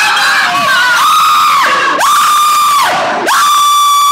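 Rollercoaster riders screaming and yelling: mixed shouting at first, then three long, high-pitched held screams in a row.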